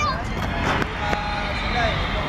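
Shouts and calls from young football players and onlookers on an outdoor pitch: short, high voices over a steady low background rumble.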